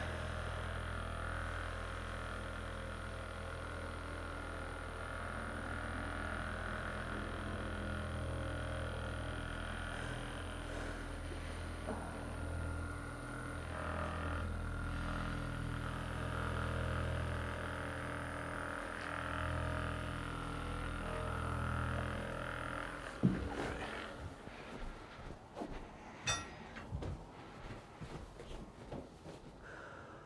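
Handheld percussion massage gun running steadily against a patient's upper back, a constant motor hum with a fixed pitch. It stops about 23 seconds in, followed by a few scattered knocks and clicks.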